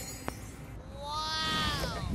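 A single drawn-out, meow-like call that rises and then falls in pitch, starting a little under a second in, over the fading tail of the music.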